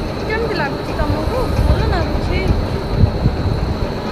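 Roadside street background: a low, uneven rumble of traffic, with faint voices in the distance.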